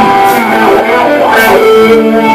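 Live band music from a concert stage, with guitars to the fore.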